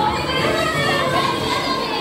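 Many children's and audience voices overlapping, with music playing under them.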